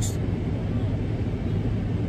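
Car engine idling, heard as a steady low rumble inside the cabin.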